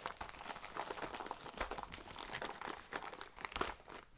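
Newspaper crinkling and rustling as it is rolled and folded tightly around a stack of bangles, with a few sharper crackles.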